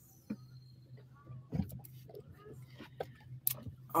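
Faint handling noise of a fishing rod and reel during a cast: scattered light clicks and knocks, with a sharper click shortly before the end, over a low steady hum.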